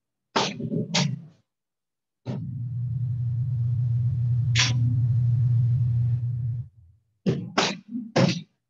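Kicks smacking a handheld kicking paddle and striking pads: two sharp smacks about half a second apart, another a little past the middle, and three quick ones near the end. A steady low hum lasts about four seconds in the middle.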